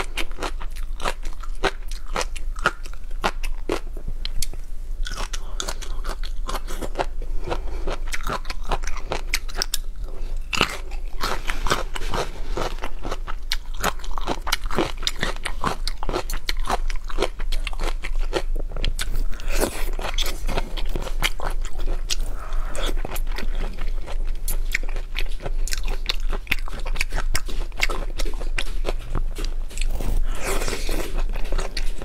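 Close-miked eating of raw shrimp and crunchy sides: continuous crunching, biting and chewing, full of small crackling clicks.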